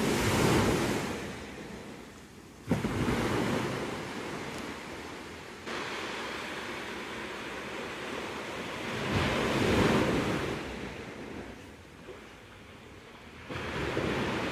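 Ocean surf breaking on a beach, the wash swelling and fading in several surges, loudest about a second in and again around nine to ten seconds, with some wind buffeting the microphone.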